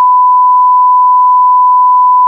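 A loud electronic beep on one unchanging pitch, a single pure tone like a test tone, held steady without any variation.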